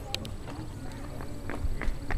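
Footsteps on a hard path, a string of irregular short taps and clicks.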